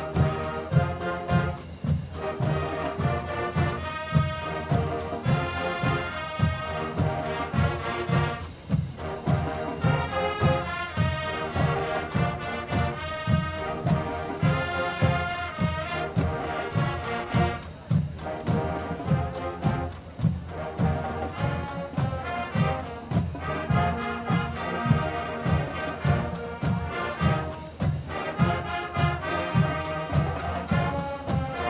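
High school marching band playing a field show: massed brass chords with sousaphones over a steady drumline beat.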